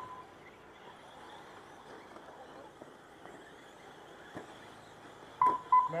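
Short electronic beeps: one right at the start, then a long stretch of faint background, then two more close together near the end, which are the loudest thing here.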